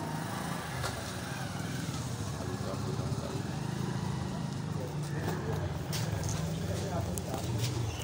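Steady low hum of background street noise, like a running vehicle engine, with faint, indistinct voices and a few light handling clicks in the second half.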